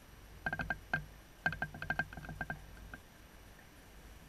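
Series of short turkey yelps: a quick group of about four, a single note, then a run of about ten that fades out.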